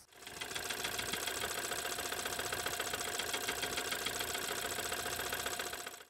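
Running engine with a rapid, even, metallic slapping knock: the sound of a failing (spun) rod bearing.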